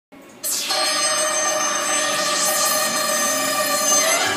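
A steady electronic ringing tone, several pitches held together without a break, starting about half a second in.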